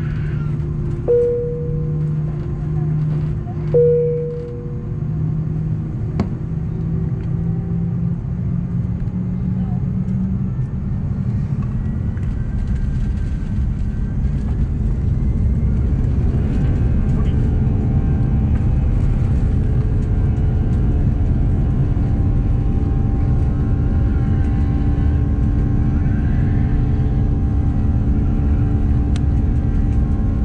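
Airbus A340-300's four CFM56 turbofan engines spooling up from idle, their hum rising in steps, then running at takeoff power with a loud, steady rumble heard inside the cabin as the takeoff roll begins. Two cabin chimes sound about one and four seconds in.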